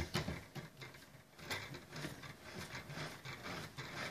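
Irregular small clicks and rattles from hands working the thread binding on a fishing rod on a workbench.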